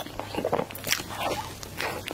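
Someone chewing a mouthful of matcha crepe cake, with irregular mouth clicks and smacks several times a second.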